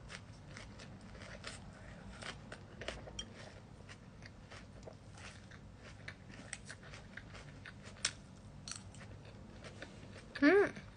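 A person chewing food close to the microphone, faint, with many small scattered clicks and taps and one sharper tap about eight seconds in.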